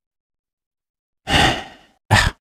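A person's sigh: one audible breath out, starting about a second in and fading away.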